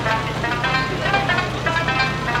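Okinawan sanshin plucked in a quick run of notes, several a second, over a steady low hum.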